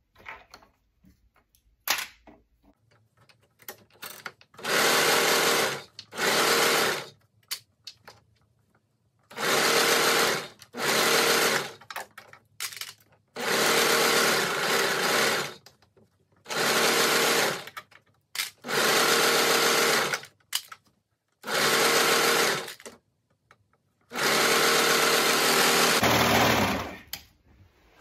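Brother overlocker (serger) stitching a seam on knit fabric in short runs of one to two seconds each. It stops and starts about nine times, with quiet fabric handling in the gaps.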